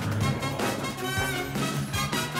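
Background music from a cartoon soundtrack: a driving action score with a steady bass line.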